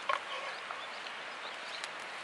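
A metal spoon clinks once against a skillet just after the start. Behind it is a steady outdoor hiss with a few faint bird chirps.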